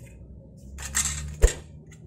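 A steel framing square scraping briefly across ceramic floor tile, then knocking once sharply against the tile about one and a half seconds in.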